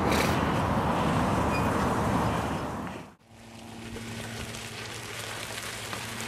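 Riding noise from a moving bicycle: wind rushing over the microphone and tyres on the path, a steady rushing noise that stops abruptly about three seconds in. It gives way to a quieter stretch with a faint steady low hum.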